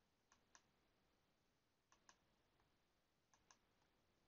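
Computer mouse button clicked three times, about a second and a half apart, each click a faint quick press-and-release double tick.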